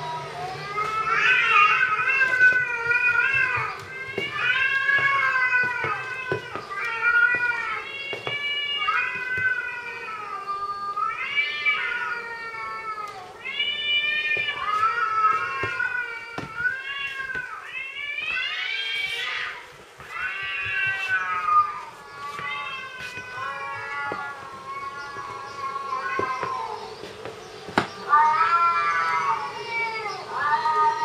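Recorded cat meows played back, one meow after another about once a second, with a loud rising call a little past halfway: the recordings are being used to test a house cat, which searches for the unseen cats.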